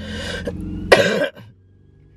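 A man ill with flu coughing: a rough, rasping cough, then a sharper, louder cough about a second in.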